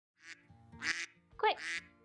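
A woman's voice beginning to read the title aloud, the word 'Quick', over soft background music with steady held notes.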